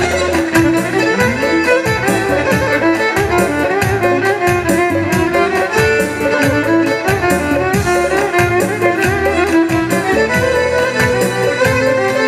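Electric violin playing a melody over keyboard synthesizer accompaniment with a steady drum beat.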